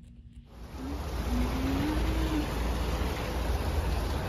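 Outdoor street ambience: a steady rushing noise with a deep rumble, coming in about half a second in, with a faint rising tone midway.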